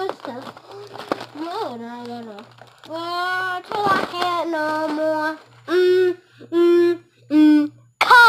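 A young girl singing without clear words, her voice sliding and bending in pitch, then three short, loud held notes near the end.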